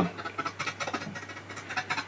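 Faint, choppy snatches of a video clip's own audio as it is stepped forward frame by frame in an editor, over a steady low hum.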